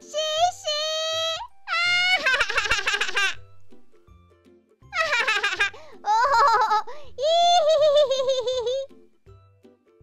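A high-pitched cartoon voice shouting, then laughing hard in several long bursts ('ah, ah, ah, oh, oh, oh, ih, ih, ih'), over soft children's background music.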